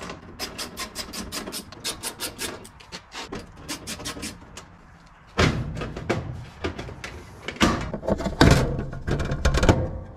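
A fast, even run of clicks from a hand tool working the screws of a washing machine's rear panel. About halfway through, louder scraping and rattling as the panel is worked loose and pulled off the cabinet.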